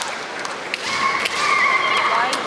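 Woman kendo competitor's kiai: a long, very high-pitched held shout starting about a second in, with a few sharp taps around it.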